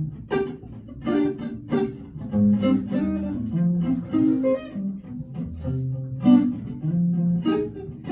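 A guitar playing a run of single plucked notes in a low register, some struck sharply and some held, like someone noodling a melodic line through an amplifier.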